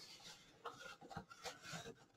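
Faint rustling and scraping of a small cardboard shipping box handled and opened by hand, its flaps pulled back, in a few soft separate strokes.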